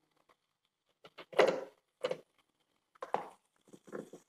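OPOS CookBot pressure cooker lid being twisted open and lifted off: a handful of short clunks and scrapes of the lid against the pot, the loudest about a second and a half in.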